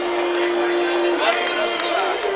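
Singing: a voice holds one long steady note, breaks briefly about a second in, then holds it again, over a busy background of crowd noise.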